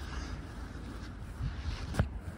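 Steady low rumble of wind on the microphone with faint outdoor background noise, and a brief knock or handling bump right at the end.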